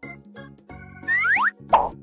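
Playful children's background music with comic sound effects laid over it: about a second in, a few quick rising whistle glides, then a short plop.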